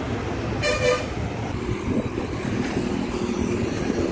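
Road traffic running past with a steady rumble, and a short vehicle horn toot about a second in.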